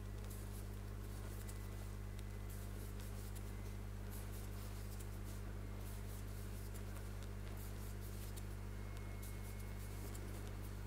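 Faint, irregular scratching and ticking of a metal crochet hook pulling cotton yarn through single crochet stitches, over a steady low hum.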